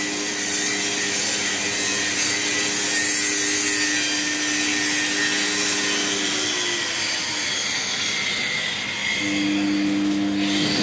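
Electric motor and reduction gearbox of a three-roll pipe bending machine running with its chain-driven rollers turning empty: a steady hum under a rough mechanical noise. The hum winds down about seven seconds in and starts up again just after nine seconds.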